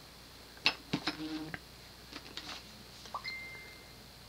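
Ceiling fan with a GE stack motor running quietly on low speed, a faint steady hum. Over it come several sharp clicks and squeaky chirps about a second in, and near the end a short rising chirp followed by a steady high tone.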